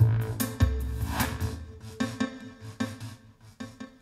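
Music with heavy bass and a steady beat played through a pair of Magnat Transpuls 1000 floor-standing loudspeakers, dying away toward the end as the track finishes.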